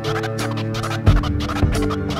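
Instrumental hip hop beat with sustained keyboard-like notes, a strong low beat hit about a second in, and turntable scratching over it.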